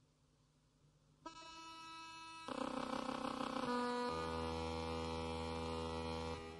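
Atonal electronic music. After about a second of near silence, sustained buzzy electronic tones come in abruptly, and new layers step in about every second, each louder than the last. A low drone joins past the halfway point.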